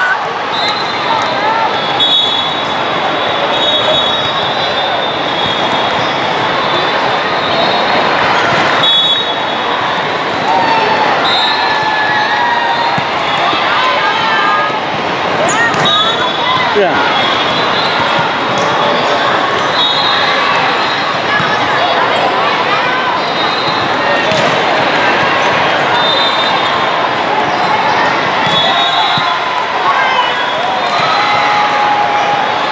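Din of an indoor volleyball tournament hall, echoing: many voices from players and spectators, with a few sharp volleyball hits during a rally. Short high tones recur throughout.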